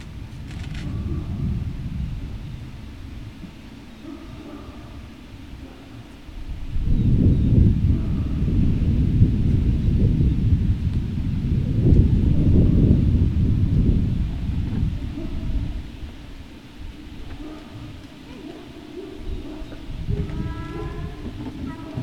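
Low, uneven rumbling of wind buffeting an outdoor microphone, loudest for about eight seconds in the middle, with a brief faint pitched sound near the end.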